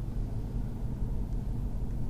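Jeep Grand Cherokee Trackhawk's supercharged 6.2-litre Hemi V8 running steadily at low revs, heard from inside the cabin.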